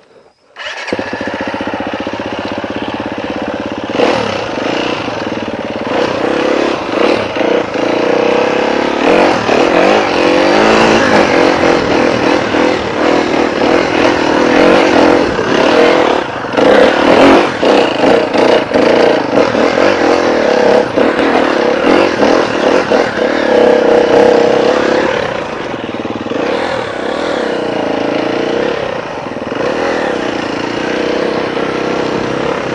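Husqvarna FE250's single-cylinder four-stroke engine starting up about a second in, then running as the bike is ridden on a muddy trail, the revs rising and falling with the throttle.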